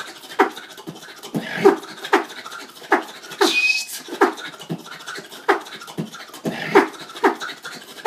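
Solo human beatboxing: a steady beat of strong vocal kick and snare hits, with rapid mouth clicks in between, and a short high whistled note about three and a half seconds in.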